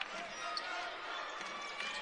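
A basketball being dribbled on a hardwood court over a steady, low hum of arena crowd noise.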